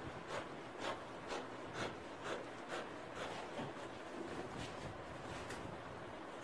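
Scissors snipping through fabric, about two cuts a second, growing fainter after about three and a half seconds.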